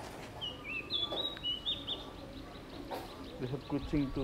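A bird calling: a short run of clear whistled notes that jump up and down in pitch for about a second and a half, starting about half a second in, over faint outdoor background.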